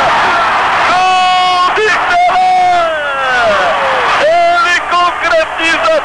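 A television commentator's goal scream: several long, high, drawn-out shouts that fall in pitch, over a cheering stadium crowd.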